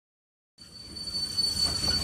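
A steady high-pitched squeal over a low rumble starts suddenly about half a second in and grows louder: the sound bed of a radio show's animated opening.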